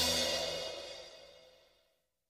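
Background music ending on a final cymbal crash that rings and fades out to silence over about two seconds.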